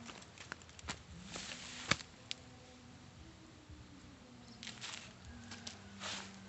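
Scattered small crackles and clicks from a smouldering pile of burning leaves and twigs, with one sharper snap about two seconds in. Dry leaf litter rustles briefly near the end.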